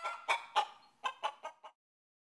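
Chicken-like clucking: a quick run of about seven short clucks, the first drawn out, stopping shortly before the end.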